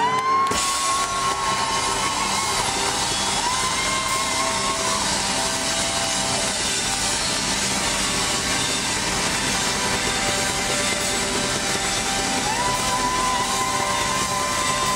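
Live rock band with horns playing loudly, with long held notes over a dense wash of sound.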